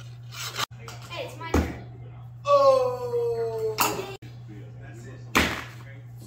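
A few sharp knocks of a plastic lid being tossed and landing hard, with a drawn-out vocal cry falling in pitch between them.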